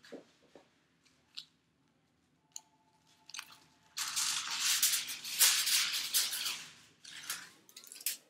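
Aluminium highlighting foil crinkling loudly for about three seconds from about four seconds in, as a foil sheet is handled; a few light clicks and taps come before it.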